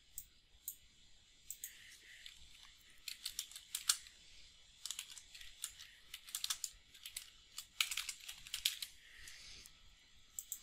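Typing on a computer keyboard: quick runs of key clicks in three bursts, with short pauses between them.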